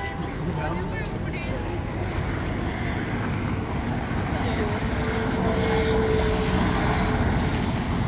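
City street traffic noise that grows steadily louder, with a drawn-out engine tone from a passing vehicle in the middle. Passers-by talk near the start.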